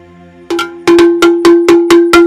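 A metal bell struck in quick, even strokes, about four or five a second, starting about half a second in, each stroke ringing on the same pitch.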